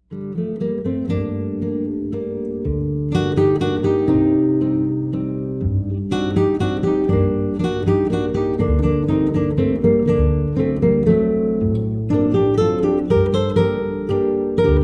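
Instrumental acoustic guitar music: plucked notes ringing over a bass line, starting suddenly at the outset and running on at an even level.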